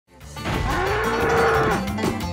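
Cartoon bull mooing: one long moo that rises, holds and drops off near the end.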